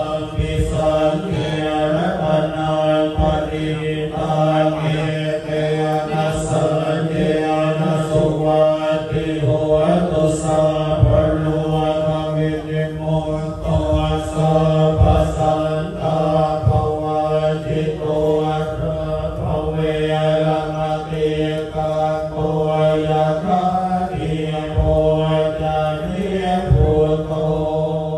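Buddhist monks chanting in unison during an amulet-consecration rite: a steady low drone of voices that runs on without a break.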